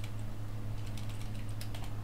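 Computer keyboard keys clicking in a few scattered taps, over a steady low hum.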